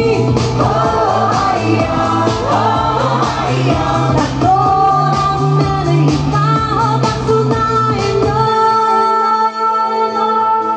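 Pop song performed live, a woman singing into a handheld microphone over a dance beat with bass. About eight and a half seconds in, the beat and bass drop out, leaving only held notes.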